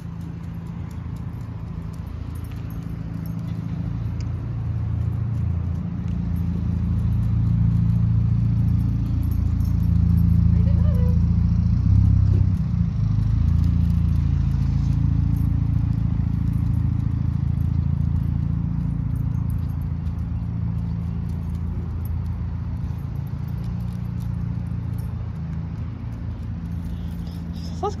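Low mechanical drone of several steady, deep tones, like an engine or large machine running nearby. It grows louder over the first ten seconds or so, then slowly fades.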